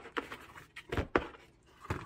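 A stack of printed paper sheets with a chipboard backing being handled and knocked into place in a stack paper cutter. There are a few short taps and knocks, with two loud ones close together about a second in.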